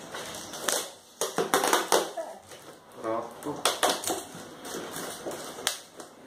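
Packaging wrap crackling and tearing in many short irregular bursts as a tightly wrapped parcel is prised open with a screwdriver.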